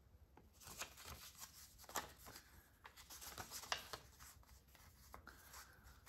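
Faint rustling and crinkling of torn paper scraps being picked up and sorted by hand, in short scattered crinkles, with a couple of sharper ones about two seconds in and near four seconds.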